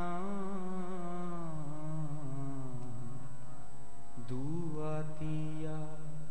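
A man's solo voice singing a slow devotional chant into a microphone, holding long notes that slide downward. He breaks off for a breath about four seconds in, then begins a new held phrase.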